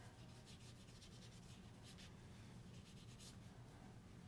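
Several faint rubbing strokes of a pen or brush tip drawn across cardstock, over a low steady hum.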